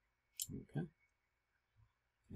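A single sharp click, followed at once by a brief wordless vocal sound, a low murmur.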